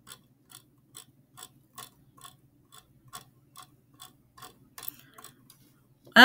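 Computer mouse scroll wheel clicking notch by notch while scrolling a page, a faint, even tick about twice a second.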